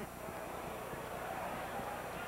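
Steady murmur of a ballpark crowd, with no single sound standing out.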